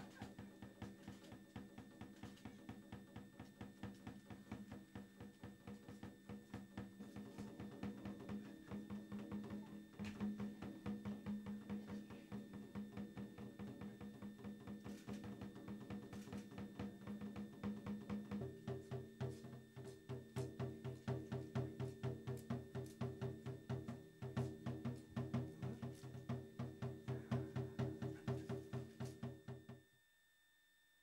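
Binzasara (ōzasara), a bundle of wooden slats on a cord, clacking in a fast, even rhythm as the dancers shake them. Underneath is a low held tone that shifts pitch about two-thirds of the way through.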